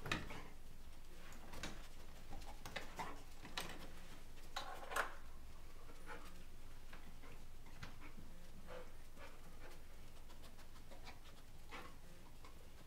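A golden retriever working as a scent-detection dog, sniffing in short bursts and panting as it searches, with scattered light clicks.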